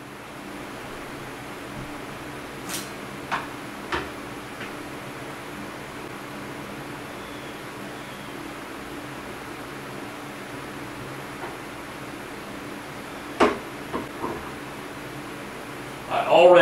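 Steady shop hum with a few sharp metal clicks and knocks from a hand-filled soft-plastic lure injector and its aluminium mold clamp being handled. The clicks come as a cluster a couple of seconds in and again, louder, near the end.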